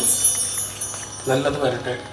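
High metallic chime ringing, dying away as a devotional song ends. A man's voice gives a short phrase about a second and a half in.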